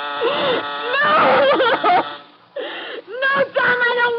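A woman screaming and crying out in terror in two long loud bursts, the second a held wail. A steady buzzing tone cuts off just after the start.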